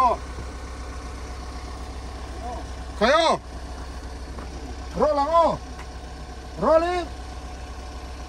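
A car engine idling with a steady low hum, with short spoken phrases over it about three, five and seven seconds in.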